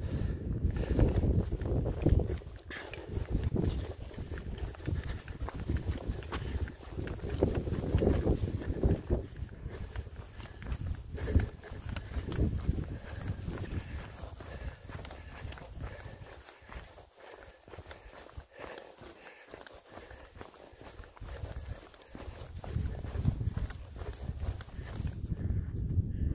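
Footsteps of a hiker walking on a dirt and gravel trail, with an uneven low rumble on the microphone. It eases off for a few seconds about two-thirds of the way through.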